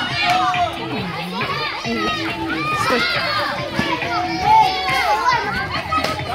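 A crowd of children chattering at play, many voices overlapping at once.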